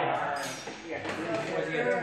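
Indistinct men's speech in a room.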